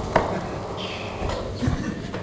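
A few light knocks and clicks from hands working at a lectern while a laptop is being connected, with one just after the start and another near the end, over faint room noise.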